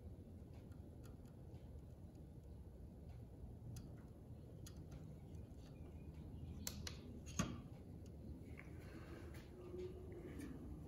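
A few faint clicks and light taps of a handheld TDS meter and a plastic cup being handled, over a quiet room background; the sharpest tap comes about seven and a half seconds in.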